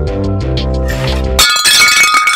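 Background music plays until about one and a half seconds in, then cuts off abruptly into a loud crash of breaking glass with high, ringing shards.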